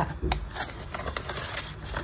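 Paper banknotes rustling and sliding into a clear plastic zip pouch in a cash binder, with a couple of light clicks in the first second.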